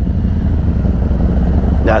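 Harley-Davidson Electra Glide's V-twin engine idling with a steady low rumble. A man's voice comes in near the end.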